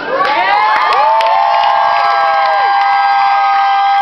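Concert crowd cheering and screaming, many high voices overlapping and sliding up and down in pitch. One voice holds a long, steady high note through most of it.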